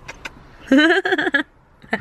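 A cat gives one drawn-out meow in the middle, rising and then falling in pitch. A few short clicks come near the start, and a low car hum runs underneath.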